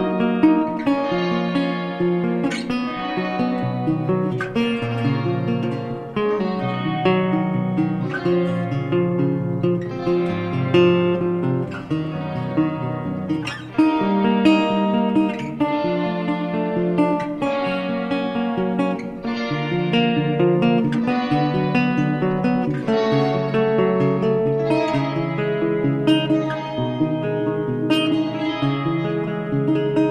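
Recorded instrumental guitar music: a melody picked on guitar, a new note or chord every half second to a second, each left to ring.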